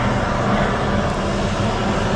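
Steady, loud rumbling hum of an indoor ice rink's background noise, with a low droning tone underneath and no distinct events.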